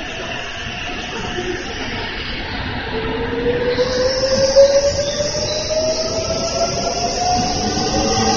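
A limited express electric train pulling out of the station, growing louder as it gathers speed. From about three seconds in, its traction motors give a slowly rising whine over the rumble of the wheels on the rails.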